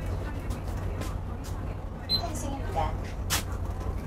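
Low, steady engine and road rumble of a bus on the move in city traffic, with faint voices mixed in and a brief click about three seconds in.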